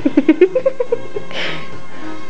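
A person giggling in a quick run of short, high bursts that climb in pitch, then a breathy exhale, over steady background music.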